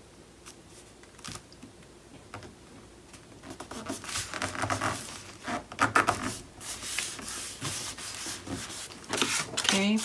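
Hands handling sheets of cardstock and patterned paper on a cutting mat: paper sliding, rubbing and rustling as a panel is pressed down and another laid on. It is quiet for the first few seconds, then the rubbing gets busier and louder from about three and a half seconds in.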